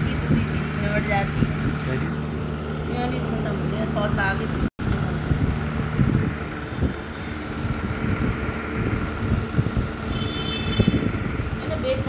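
Indistinct voices over a steady background rumble and hum, with a momentary dropout in the sound just before halfway through.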